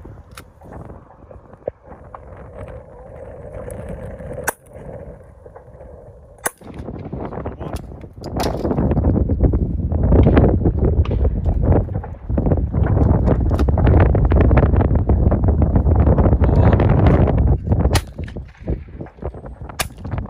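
Shotgun shots at clay targets, fired in two pairs: the first pair about four and a half seconds in, the second near the end, the two shots of each pair about two seconds apart. In between, wind buffets the microphone loudly for several seconds.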